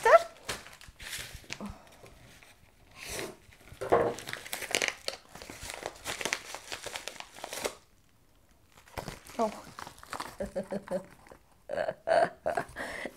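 Packaging crinkling and tearing as a yellow postal mailer envelope is ripped open by hand, in irregular rustling bursts that stop about eight seconds in.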